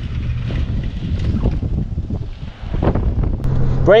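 1993 Ford Explorer's 4.0-litre V6 and running gear giving a steady low rumble as it drives, with wind buffeting the microphone. A steady low engine hum comes in near the end.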